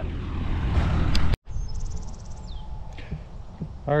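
Heavy diesel engine running steadily, cut off abruptly about a second and a half in. A quieter outdoor background follows, with a short burst of high, rapid chirping.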